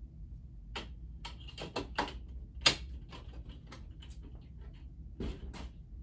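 A run of irregular clicks and knocks, the loudest about two and a half seconds in, as a soft pet carrier is handled and set aside.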